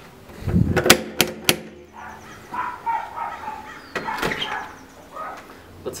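Knocking on a front door: three sharp knocks about a second in, followed by fainter, uneven sounds until the door is answered.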